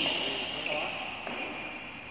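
Sounds of a badminton game in a large hall: a high, steady squeal fades out over the first second and a half, with faint voices and thuds on the court.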